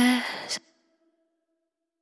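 The last sung note of a female electronic pop vocal: a short, breathy 'uh' falling in pitch, with a faint echo that fades out within about half a second. Dead silence follows.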